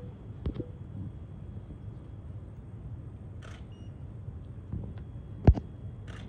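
Camera shutter clicks from several photographers' cameras and phones, over a low steady room hum, with one sharp, loud click near the end.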